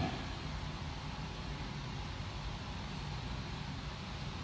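Steady background hiss and low hum of room tone, with no distinct sounds standing out.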